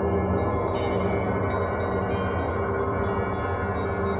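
Gongs ringing in a sustained low wash, with a rapid, irregular tinkling of small metal chimes over it.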